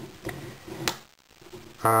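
A few light, sharp clicks of plastic Lego pieces as the model dragon's head is worked on its hinge. The clearest click comes just under a second in.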